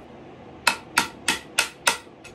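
Five sharp hammer blows on steel, about three a second, striking at the split lock washer under a seized bolt on a Johnson two-stroke outboard powerhead to break it out. The washer is just spinning around instead of breaking.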